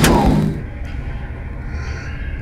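A short knock right at the start, then a low, steady ambient drone of the scene's soundtrack.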